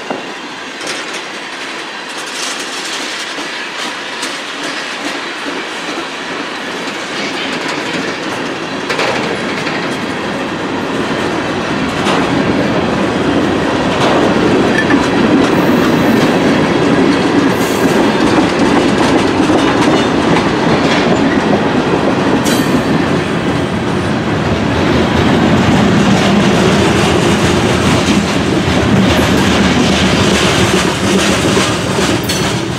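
Freight cars (tank cars and covered hoppers) rolling past close by: a steady rumble of steel wheels on rail with scattered wheel clicks. It grows louder over the first dozen seconds, then holds.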